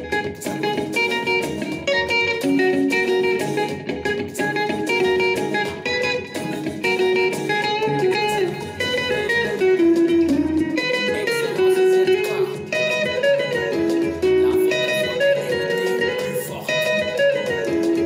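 Solid-body electric guitar playing a quick plucked lead melody over a backing track with a steady beat and bass notes.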